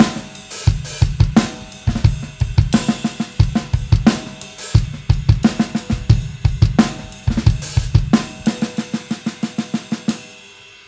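Acoustic drum kit with Paiste cymbals played with wooden sticks: a fast, continuous pattern of strokes on the snare and toms with cymbals ringing over them.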